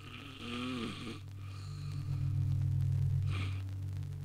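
A man snoring in several rasping breaths over a steady low hum that grows louder.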